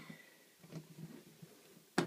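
Quiet pause: faint room tone with a few faint, short, soft sounds near the middle.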